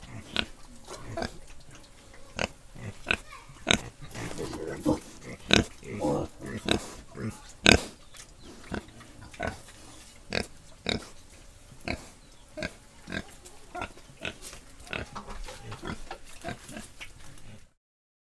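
Pigs grunting: short, irregular grunts about two or three a second, with a few longer calls around four to six seconds in.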